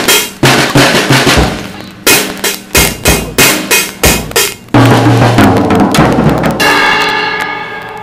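Drum-kit beat of a backing track, kick and snare hits in a steady rhythm. About five seconds in the beat stops and gives way to a long held note that slowly fades out.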